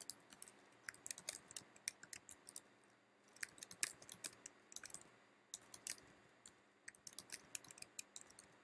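Keys typed on a computer keyboard in quick runs of sharp clicks, with short pauses about three and five seconds in.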